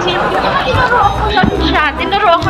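Women chatting and laughing, with music playing in the background.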